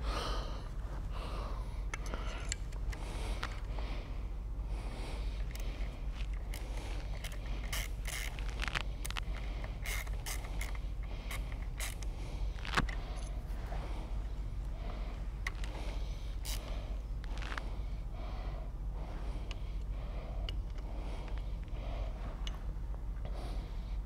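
Faint, irregular metallic clicks and light scraping from hand tools and bolts being handled and threaded into the steel cam phaser, with one sharper click about halfway through, over a steady low hum.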